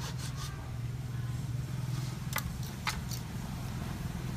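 A large knife blade shaving and scraping a thin bamboo strip against a wooden block, with a few sharp clicks, two of them clear about two and a half and three seconds in. A steady low hum runs underneath.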